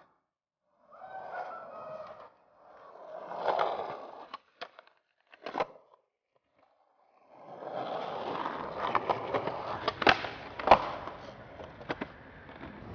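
Skateboard wheels rolling on concrete in short stretches, with sharp clacks of the board hitting the ground. After a brief silence comes a longer steady roll with several clacks, the loudest about three-quarters of the way through.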